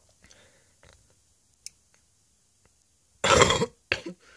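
A man's loud throat outburst, a cough or burp, about three seconds in, lasting half a second, with a short second one just before the end. Before it there are only a few faint clicks.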